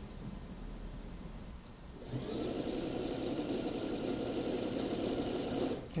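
Electric sewing machine stitching a sleeve seam at a steady speed, starting about two seconds in and stopping just before the end.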